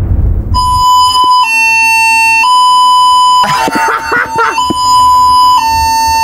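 Cruise ship's alarm signal sounding in a cabin: a steady two-tone signal that alternates between two pitches about once a second, starting after a short rushing noise, with a brief jumble of other sound midway. It was a test alarm.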